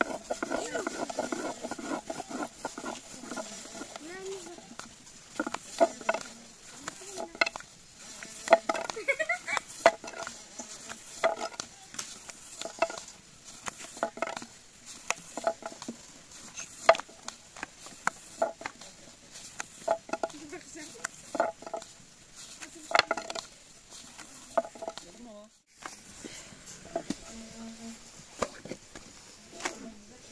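A long thin wooden rolling pin knocking and clacking on a wooden board as dough is rolled out into a thin sheet, in short irregular strokes. A voice is heard in the first few seconds.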